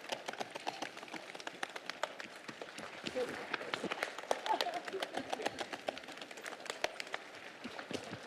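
A roomful of people patting their own legs with their hands, a scattered, irregular patter of many quick taps on clothing, with faint voices underneath.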